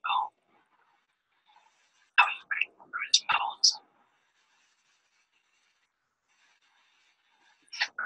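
A person whispering a few words: a short burst at the start, then a longer phrase about two seconds in.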